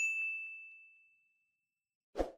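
Notification-bell chime sound effect: a single bright ding that rings out and fades away over about a second and a half.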